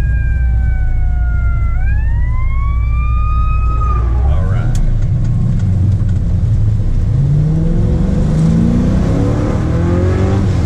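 Inside the cabin of a 1981 Camaro Z28 with a 6.0-litre LQ4 V8 and T-56 six-speed: a high whine falls slowly, then rises and cuts off about four seconds in, followed by a sharp click as a gear is shifted. Over the last three seconds the V8 revs rise steadily under hard acceleration.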